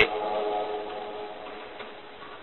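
The man's voice rings on after his last word as a fading echo tail, dying away over about a second and a half into a faint steady hiss.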